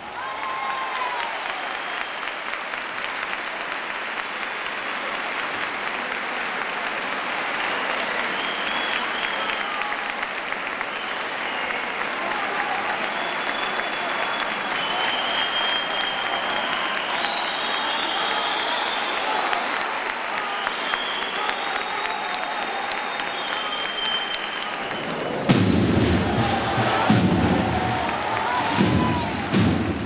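Large audience applauding steadily, with scattered cheers. About 25 seconds in, the band's drums break in suddenly with loud, repeated beats.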